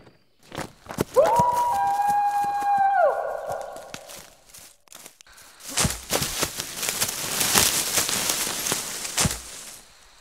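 Footsteps hurrying through dry fallen leaves and pine needles, a dense crunching and rustling through the second half. Before that, a single high-pitched squeal lasting about two seconds, bending up at its start and dropping away at its end.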